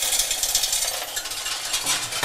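Metal coins pouring and rattling into a coin-deposit machine as its tray is tipped, a dense rapid clatter that the machine is about to count.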